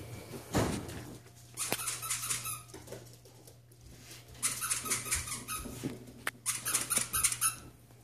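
A plush squeaky dog toy squeezed in quick repeated bursts: a short run about a second and a half in, then a longer run of about three seconds from the middle on.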